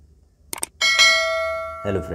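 Subscribe-button animation sound effect: two quick mouse clicks, then a bright bell ding that rings and fades over about a second.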